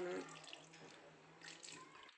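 Water poured from a plastic bottle into a pan of thick curry masala, a faint steady pouring sound with a few soft clicks near the end.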